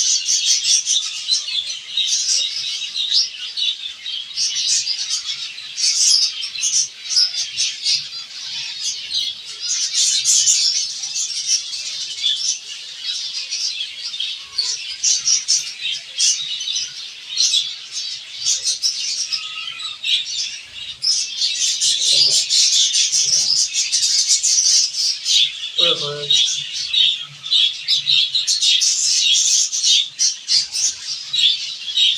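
A colony of zebra finches chirping nonstop, many short high calls overlapping.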